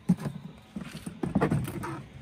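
Hollow plastic knocks and rattles of a propane-bottle cover being lifted off a pair of 20-pound propane bottles: one sharp knock at the start, then a cluster of knocks just over a second in.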